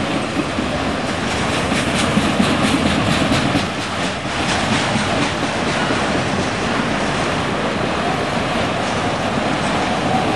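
Freight train of autorack cars rolling past: a steady rush of steel wheels on rail, with a run of quick wheel clicks over the rail joints in the first half.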